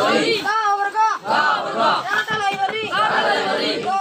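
Many boys' voices reading lessons aloud at once, a loud, continuous chant of overlapping recitation.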